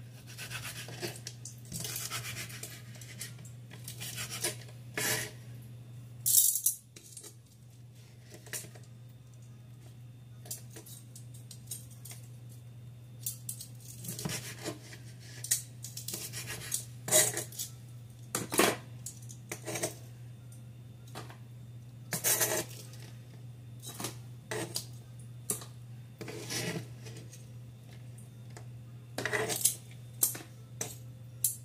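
Kitchen knife cutting crisp cooked bacon on a wooden cutting board, with metal tongs clicking: a run of irregular sharp knocks and scrapes, the loudest about six seconds in. A steady low hum runs underneath.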